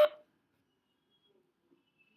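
Near silence after a brief fragment of a man's voice right at the start.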